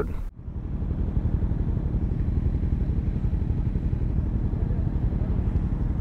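Yamaha motorcycle engine running with a steady low rumble, heard from a helmet-mounted camera on the bike. It begins abruptly just after the start.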